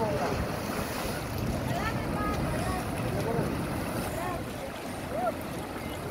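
Sea waves breaking and washing against a rocky shore, with wind buffeting the microphone; scattered voices are faintly heard in the background.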